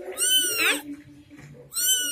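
Newborn kitten mewing: two high-pitched cries, the first rising and then falling in pitch, the second starting near the end and sliding down.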